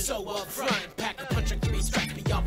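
Hip hop song playing: rapping over a beat with a deep, recurring bass.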